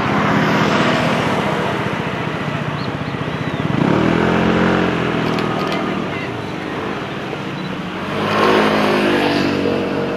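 Motor vehicle engines running by on the road, with one rising in pitch as it accelerates about four seconds in and another about eight and a half seconds in.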